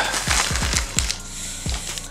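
Clear plastic packaging rustling and crinkling as a thick microfibre drying towel is slid out of it by hand, with several irregular soft low thumps from the handling.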